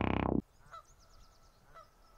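Synthesizer music cuts off suddenly a fraction of a second in. It is followed by two faint, short bird calls, honking like geese, about a second apart.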